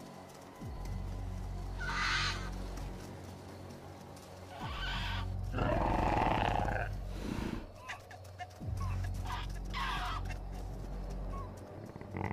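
Background music with a low, steady drone, over which a hadrosaur gives sound-designed calls: a loud, long call about six seconds in, with shorter, higher calls around two, five and ten seconds in.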